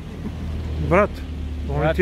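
A voice speaking a short word in Serbian, with a second phrase starting near the end, over a steady low rumble that does not change.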